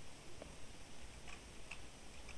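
Faint computer keyboard keystrokes: a few separate clicks, irregularly spaced, as a date is typed.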